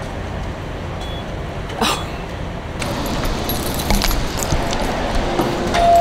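Steady outdoor traffic and idling-vehicle hum at a gas station forecourt, with a few light clicks and knocks. A short exclamation comes about two seconds in.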